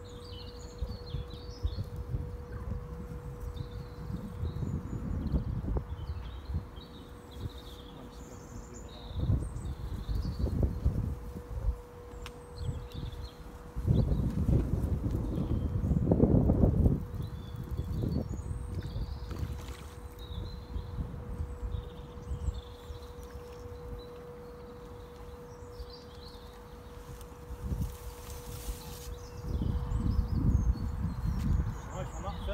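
Small birds chirping and singing throughout, with irregular low rumbling on the microphone that is loudest around halfway, and a faint steady hum underneath.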